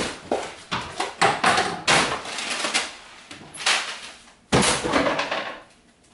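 Repeated knocks and clatter of kitchen items being grabbed and dropped into cardboard moving boxes, with a louder bang about four and a half seconds in.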